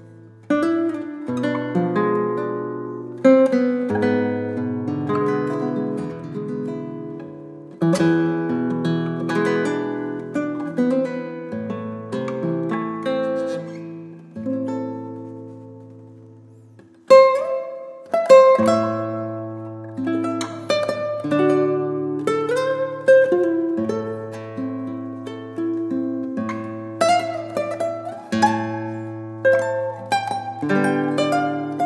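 Solo classical guitar played fingerstyle: a plucked melody over steady bass notes. The playing thins and dies away about halfway through, then comes back in with a strong attack.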